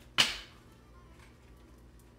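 A single brief, sharp swish of a tarot card deck being shuffled in the hands, about a fifth of a second in, followed by only a faint steady hum.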